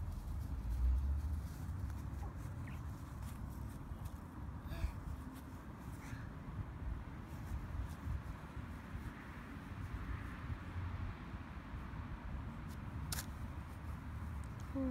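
Low, uneven outdoor rumble with a few faint sharp clicks, the clearest near the end.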